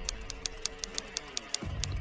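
Intro-logo sound effect: a quick run of short typing-like clicks, about six a second, over a held musical tone. The tone drops out about one and a half seconds in, and low music starts again near the end.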